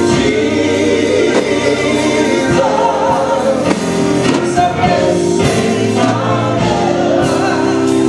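Gospel praise team of several voices singing together through microphones, holding long sustained notes over electric keyboard chords.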